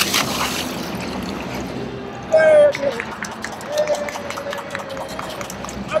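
A sit-on-top fishing kayak capsizes with its paddler into a pool: a splash as he goes under, then the water sloshing around the overturned hull. About two seconds in, a voice calls out loudly and briefly.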